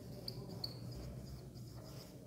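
Felt-tip marker squeaking on a whiteboard as a word is written: a few short, high squeaks in the first second, over a faint low steady hum.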